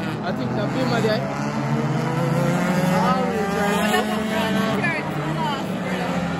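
A pack of race cars running on a distant circuit, their engines making a steady drone with several engine notes rising and falling as the cars accelerate and lift. Spectators talk over it nearby.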